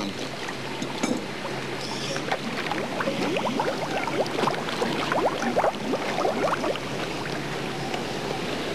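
Water sloshing and gurgling around divers standing in the spring, with many short rising bubble-like gurgles over a steady wash of water noise.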